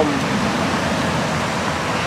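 Steady rushing background noise: an even hiss with no distinct events, of the kind made by traffic on wet roads, rain or wind.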